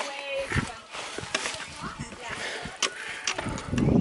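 People's voices talking, mixed with many scattered knocks and scuffs from handheld movement over rock, and a low rumble near the end.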